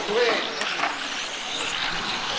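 Electric motor of a 1/10-scale RC touring car whining as the car accelerates, the pitch rising steeply from about half a second in, over a steady hiss of tyres and track noise.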